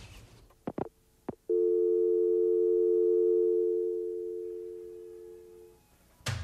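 Three soft clicks, then a North American telephone dial tone: a steady two-note hum that fades away toward the end.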